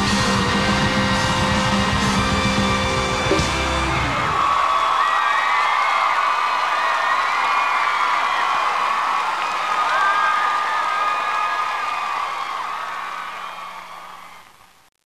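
A live pop band plays the last bars of a song and stops about four seconds in. An audience of many voices then cheers and screams, and the sound fades out near the end.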